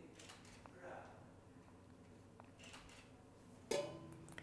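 Olive oil poured faintly from a stainless steel oil can into a steel pot, then near the end a single sharp metallic clank as the steel can is set down on the steel worktop.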